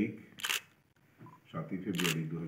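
A man speaking in short phrases with a pause, in a small room. A brief hissy burst about half a second in breaks the speech.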